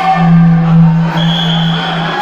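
A steady low tone held for about two seconds, with a fainter high steady tone joining about a second in, over the background noise of the hall.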